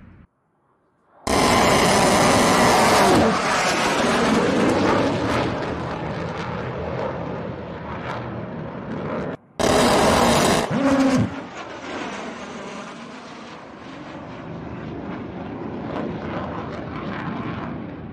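F-16 fighter jets flying past on low passes. A loud jet roar starts abruptly about a second in and slowly fades. A second pass starts abruptly about halfway through, with a brief falling whine as it goes by, then fades away.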